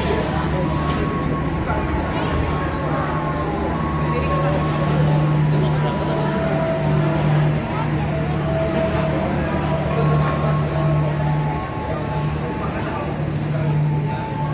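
A large engine running steadily, a continuous low drone that never lets up, with people talking over it.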